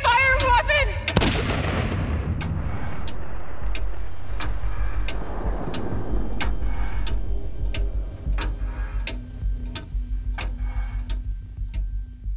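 Trailer sound design: a deep booming hit about a second in, with a falling trail. It is followed by a low pulsing beat with sharp ticks about twice a second, thinning out toward the end.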